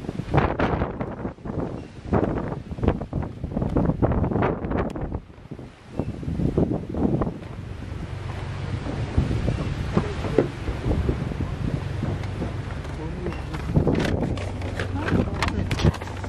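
Strong gusty wind buffeting the microphone, storm wind from a cyclone. From about halfway through, a steady low hum of an idling vehicle engine runs under the wind.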